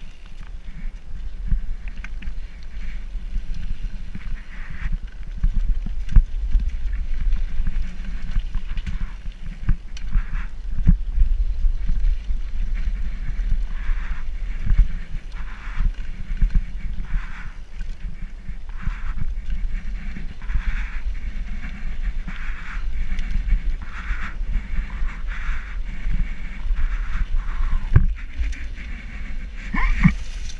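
Mountain bike riding over a rough dirt and concrete-slab path: a steady low rumble from the ride, broken by frequent knocks and rattles as the bike goes over bumps.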